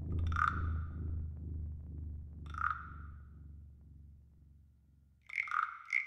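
A quiet passage of a percussion-led instrumental track. The low ringing of drum hits fades out over about four seconds, while sparse high electronic pings sound: one early, one at about two and a half seconds, and a quick cluster of three near the end.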